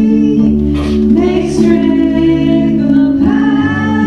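A small worship band performing live: several voices singing together over sustained keyboard chords.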